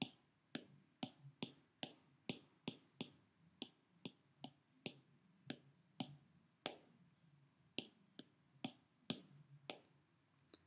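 Faint key clicks from typing on an iPad's on-screen keyboard, a quick irregular run of about two to three clicks a second with a brief gap about seven seconds in.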